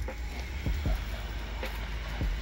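Low steady rumble of wind and handling on a hand-held camera's microphone as it is swung about, with a few soft thumps.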